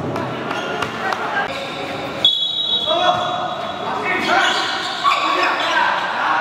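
A basketball bouncing on the hard floor of an indoor court, with players' voices calling and echoing in the hall.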